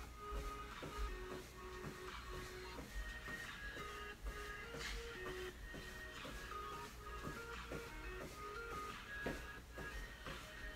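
Background music with a melody of short notes, under a quick run of soft shuffles and thuds from sneakers on an exercise mat during mountain climbers.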